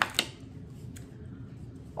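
A couple of short, sharp clicks right at the start and a faint one about a second in as the contents of a gift package are handled, then quiet room tone.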